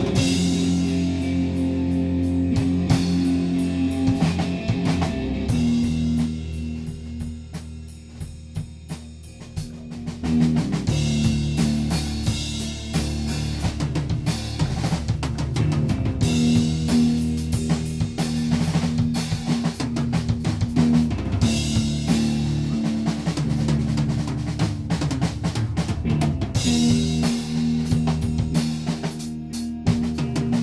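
A small rock band plays live on electric guitar, electric bass and drum kit, with sustained guitar chords over a steady drum beat. The music drops quieter about six seconds in, then comes back in full about ten seconds in.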